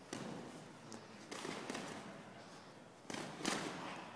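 Boxing gloves landing during light sparring: about five sudden thuds and slaps in four seconds, the loudest near the end.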